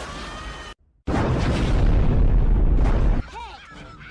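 Cartoon explosion sound effect: a loud blast lasting about two seconds, starting about a second in after a brief dead silence and cutting off suddenly.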